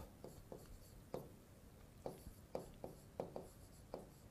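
Faint scattered taps and scratches of a stylus writing on an interactive display board, about ten light strokes.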